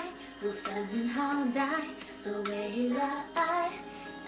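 A woman singing a pop song, several short melodic phrases that rise and fall in pitch.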